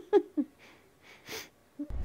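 A woman's voice in three short breathy pulses, then quiet breathing with a few faint inhales. A film soundtrack with music cuts in just at the end.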